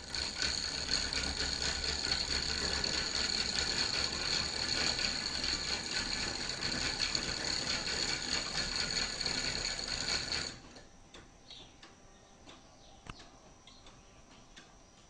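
Wooden gears and ratchet pawls of a scroll-sawn wooden mechanical calendar clattering steadily as the mechanism is run. The clatter stops abruptly about ten seconds in, leaving only a few faint ticks.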